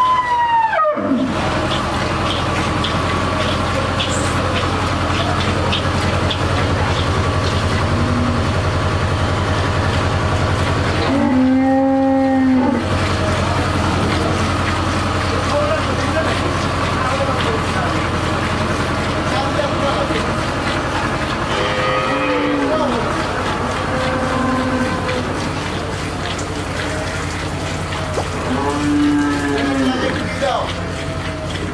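Dairy cattle mooing several times: one long, steady moo about eleven seconds in, shorter ones around twenty-two seconds and just before the end. A steady low hum runs underneath.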